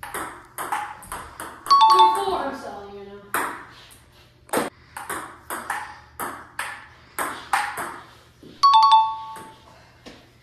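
Table tennis rally: sharp clicks of the ball off paddles and table about every half second. Twice, about two seconds in and again near nine seconds, a bright electronic ding rings out over them, the loudest sound, marking a point scored on the edited scoreboard.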